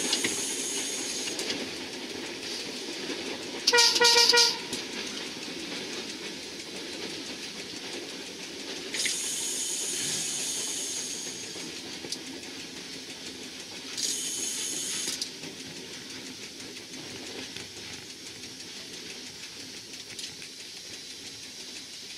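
Passenger train running along the track, heard from inside the driving cab with a steady rumble, and one short loud horn blast about four seconds in. Two stretches of high hiss come later, around nine and fourteen seconds in.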